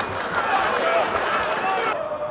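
Several men's voices shouting and calling over one another across an open football ground, short overlapping calls with no clear words.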